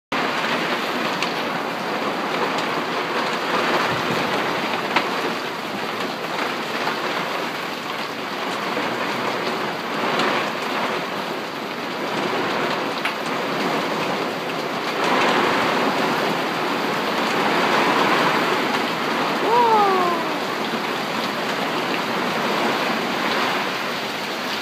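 Heavy rain mixed with hail falling on a garden, a dense steady hiss with scattered sharp ticks of stones striking and slow swells in intensity.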